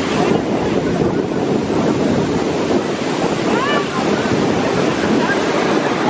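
Wind buffeting the microphone over choppy river water, a steady rushing noise, with a few short voice-like cries about halfway through.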